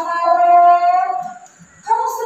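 A girl's singing voice from a projected film, holding one long, steady note that breaks off about a second and a half in, played over the room's loudspeakers.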